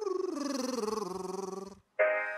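A male singer's voice singing a vocal warm-up scale. It steps down in pitch to a low held note and stops shortly before the end, and a piano chord is struck right at the end to start the next exercise.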